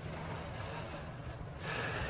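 Quiet outdoor background noise with a steady low hum, and a breath drawn in near the end.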